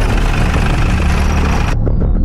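A vehicle engine idling with a steady low rumble that cuts off sharply near the end, where rhythmic music takes over.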